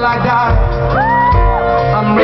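Live band of grand piano, electric guitar and drums playing, with a high wordless sung wail that slides up and is held for about half a second near the middle.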